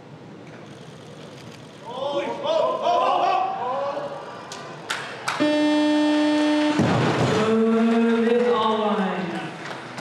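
Weightlifting arena: voices shout during a snatch. As the lifter holds 99 kg overhead, a steady electronic buzzer sounds for about a second and a half, the referees' down signal. Right after it, the loaded barbell is dropped onto the platform with a heavy crash, and more shouting and cheering follow.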